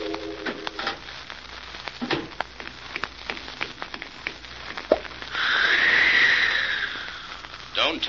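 Radio-drama sound effects: an organ music bridge dies away, then scattered soft clicks and knocks of a glass and objects being handled. About five seconds in, a hiss of liquid being poured away swells and fades over about two seconds as the poisoned drink is disposed of.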